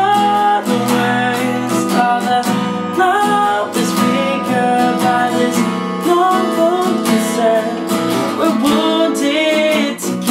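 A male voice singing over a strummed acoustic guitar.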